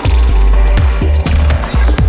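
Psychedelic downtempo electronic music (psydub): a deep bass line under a steady kick drum and sharp hi-hat hits.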